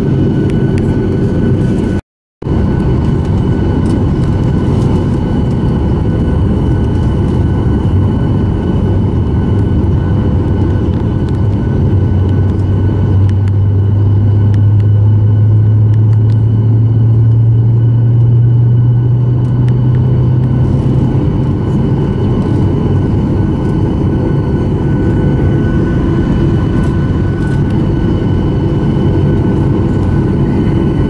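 Loud, steady rumble of an airliner's engines and rolling on the ground, heard from inside the cabin, with a low drone that swells for several seconds in the middle. The sound cuts out for a split second about two seconds in.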